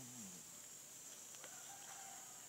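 Quiet rainforest background with a steady high insect drone. A short low call falls in pitch right at the start, and a brief higher call comes near the end.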